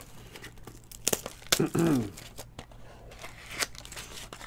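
Clear plastic shrink wrap being torn and crinkled off a trading-card box, in scattered sharp crackles. A throat clear comes in about halfway through.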